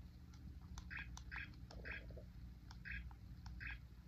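Small children's digital camera giving short electronic beeps, about five spread unevenly, with faint clicks of its small buttons as its menu is stepped through.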